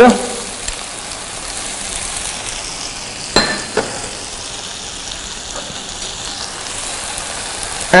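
Tomatoes and onions frying in a pan over a gas flame, a steady sizzle. About three and a half seconds in, two short clinks of a spoon against a bowl.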